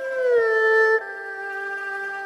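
Erhu playing a long bowed note that slides down in pitch and is held loud, then, about a second in, gives way to a quieter, lower sustained note.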